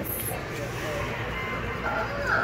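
Steady background noise of a busy store, with faint voices in the distance.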